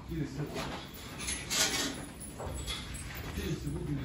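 Voices of people talking in the background, with a brief noisy clatter about one and a half seconds in.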